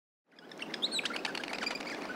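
Small birds chirping and tweeting over a soft, even outdoor background. The sound fades in out of silence about a third of a second in.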